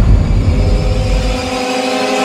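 Dramatic background score for a TV fantasy serial: a deep rumble under sustained, steady tones that come in about half a second in. The low rumble drops away near the end.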